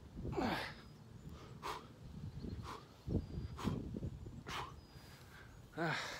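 A man breathing hard while doing push-ups, with short forceful exhalations about once a second, then a strained "ah" near the end.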